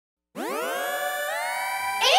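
A brief silence, then an electronic synthesizer chord swells in: many tones glide up together from low and settle into a held chord.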